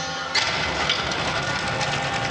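Sound effect from a projection-mapping show's soundtrack on loudspeakers: a sudden crash about a third of a second in, then a low rumble with a few smaller hits.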